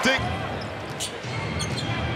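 Basketball arena crowd noise, with one sharp bounce of the ball on the hardwood court about a second in.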